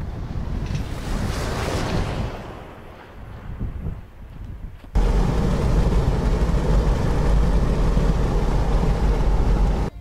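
An SUV driving past on a dirt track, its engine and tyre noise swelling and then fading over the first three seconds. From about five seconds in, a steady engine and road rumble is heard inside the moving car's cabin on a paved road.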